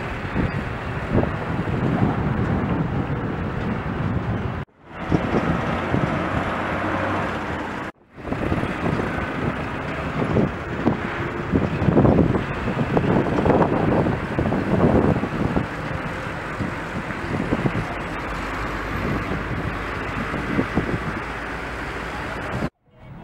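Road traffic: vehicle engines and tyres on a street, with heavier passes in the middle stretch. The sound drops out briefly twice, about five and eight seconds in.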